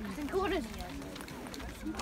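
Chatter of shoppers' voices in a crowd, with one voice heard more plainly about half a second in.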